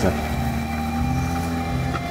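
Steady engine and road drone of a vehicle driving along, heard from inside the cab.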